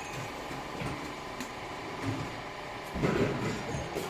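A two-head liquid filling machine runs steadily, filling metal pails with solvent. About three seconds in there is a louder clatter lasting about half a second.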